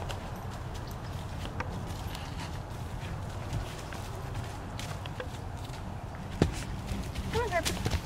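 Horse's hoofbeats on soft dirt as it approaches and jumps a log, with a heavy thud about six and a half seconds in. A short burst of a person's voice comes near the end.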